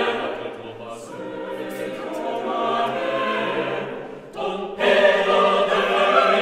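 Choral music: voices singing sustained chords that ease down in level after the start, with a brief break about four and a half seconds in before the singing returns louder.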